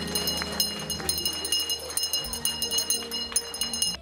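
A small handbell rung rapidly and continuously, a bright, pealing ring that stops abruptly near the end. It is the ceremonial 'last bell' that marks the end of school for the graduating class.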